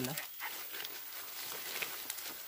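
A brief spoken "eh", then faint rustling and small crackles of leaves and twigs as people move through forest undergrowth.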